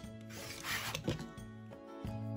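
Rotary cutter blade slicing through a strip of fabric along a quilting ruler on a cutting mat: a short scraping rasp lasting under a second, over background music.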